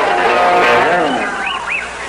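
Electric guitars of a punk rock band played loosely on stage rather than in a song, with several notes bent so that they swoop up and down in pitch about halfway through.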